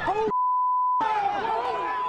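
A steady, single-pitched bleep tone, the kind laid over footage to censor a word, starting about a third of a second in. Shouting voices come in under it about a second in.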